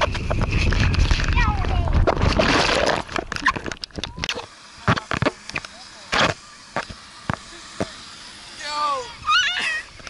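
Someone slides down a wet plastic slip 'n slide right up to the camera, with a loud rush of water and wet plastic for about three seconds. Then come scattered knocks and taps close to the microphone, and near the end high-pitched squealing voices.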